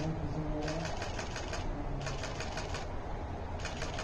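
Photographers' camera shutters firing in rapid bursts, about eight clicks a second, three bursts in a row, over a low murmur of voices.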